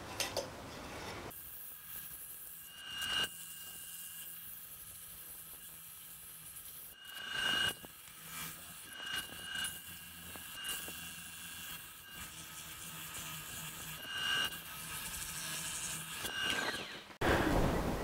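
Sandpaper held by hand against a wooden bowl spinning on a wood lathe gives a faint hiss, which swells briefly several times as the paper is pressed on. The lathe's low hum runs underneath.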